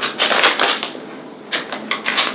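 Plastic snack packaging crinkling and crackling as it is torn open by hand, in quick irregular bursts, thickest in the first second and again near the end.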